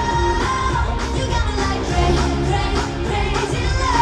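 K-pop girl group performing live in concert: a pop song with female singing over a heavy, steady bass beat, loud through the concert sound system.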